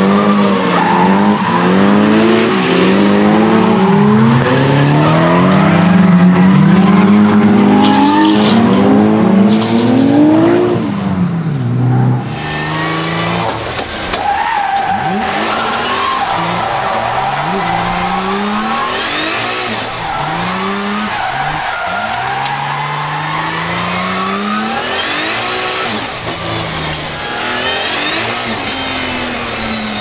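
Nissan 200SX's swapped-in VR38DETT twin-turbo V6 revved hard while drifting, its pitch swinging up and down over the noise of skidding tyres. About twelve seconds in, the sound changes to inside the car's cabin, quieter, with the engine revs climbing again and again.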